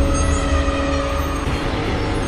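Logo-intro sound design: a deep, steady rumbling drone with a few held tones over it, easing off slightly toward the end.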